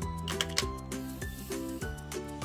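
Background music: a light instrumental tune with a steady bass and a run of short notes.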